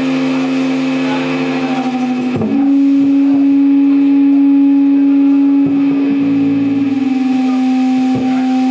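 Amplified electric guitar holding a loud, steady droning note that steps up slightly in pitch about two and a half seconds in, with a lower note joining near the end.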